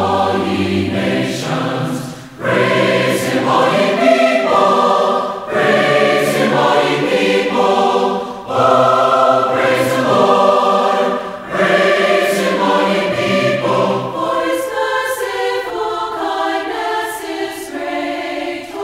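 A choir singing, several voices together in phrases of about three seconds with short breaks between them.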